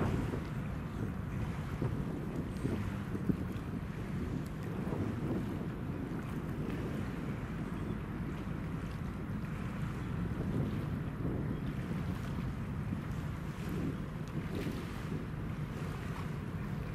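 Wind buffeting the microphone: a steady low rumble with small gusts.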